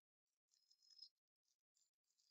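Near silence, with a faint brief rustle of plastic packaging about a second in as gloved hands open a syringe wrapper.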